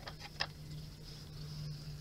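A few light clicks in the first half second as a large tomato is set on a plastic digital kitchen scale, over a steady low hum.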